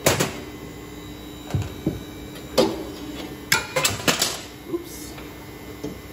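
Scattered knocks and clinks of the stainless-steel beater assembly and its parts being handled and drawn out of the freezing cylinder, with a quick run of several clinks a little past the middle. A steady low hum runs underneath.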